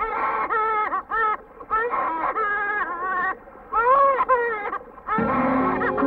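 A woman's voice wailing in long, wavering cries that rise and fall in pitch, broken by short pauses. About five seconds in, film background music with sustained low notes comes in.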